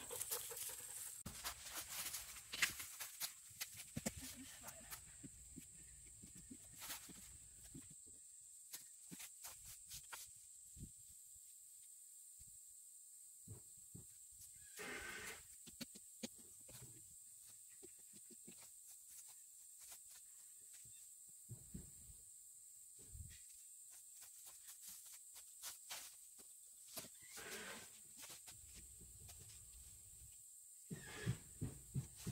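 Quiet field ambience: a steady high-pitched insect drone, with scattered faint clicks and rustles of pruning shears snipping pumpkin stems among dry vines. A brief louder sound comes about halfway through, and another near the end.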